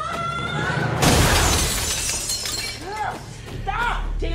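Glass shattering in a sudden loud crash about a second in, as a body is slammed into the restroom's mirror and sinks in a fight. A woman's strained cry comes just before it, and pained groans follow near the end.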